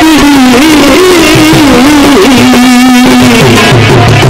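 Male singer singing a Punjabi folk song with a wavering melisma that settles into one long held note, over harmonium accompaniment. Hand-drum strokes come back in near the end.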